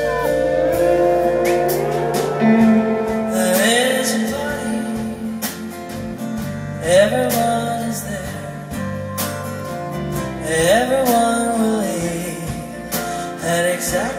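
Live band performance: a female singer holds long, sliding sung notes over acoustic guitar, electric guitar and drums.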